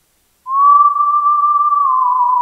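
Teenage Engineering OP-1 synthesizer playing one held, whistle-like synth tone that starts about half a second in with a slight upward scoop in pitch.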